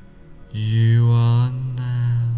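A low voice holding one long, steady chant-like tone that starts about half a second in, with a brief hiss near the end, over soft meditation music.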